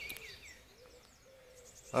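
Quiet outdoor background with faint, short high bird calls and a faint steady tone.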